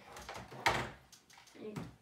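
Hard plastic Nerf blaster parts knocking together: one sharp clack about two-thirds of a second in, with lighter handling clicks around it, as a plastic tripod is fitted under the blaster.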